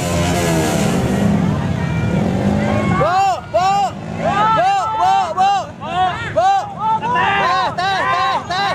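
Motorcycle and car engines running in slow, crowded convoy traffic. From about three seconds in, a quick series of short, high rising-and-falling sounds, about two a second, rises above the engines.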